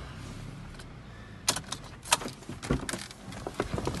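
Low steady hum of the car's engine idling. From about a second and a half in, an irregular run of sharp clicks and knocks joins it, from someone moving about and handling things in the driver's seat.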